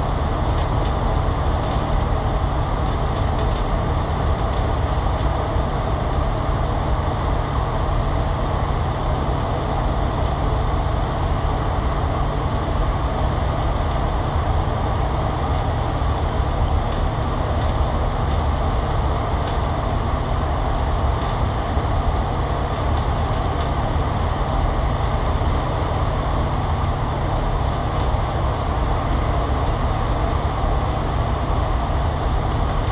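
Cabin noise inside a KMB Alexander Dennis Enviro500 MMC double-decker bus cruising at a steady speed through a road tunnel: the Cummins L9 diesel engine and the tyres give a loud, constant low rumble that holds level, with no gear changes or braking.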